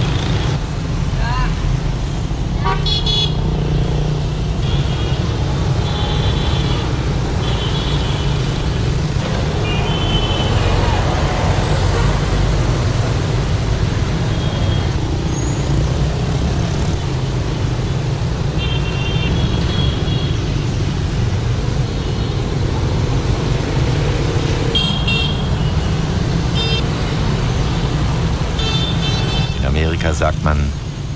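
Busy road traffic: a steady engine rumble with short horn toots every few seconds.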